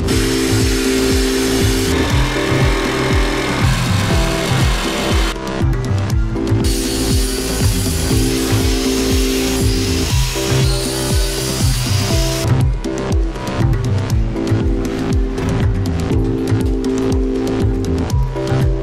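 Background house music with a steady beat. For about the first twelve seconds a power tool's cutting or grinding noise runs under it, with a short break about five seconds in.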